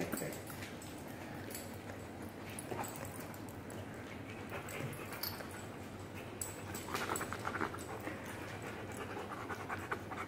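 A sedated dog panting, the rapid breaths clearest a few seconds before the end, with faint scattered clicks.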